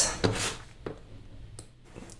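A few faint, soft clicks over quiet room tone.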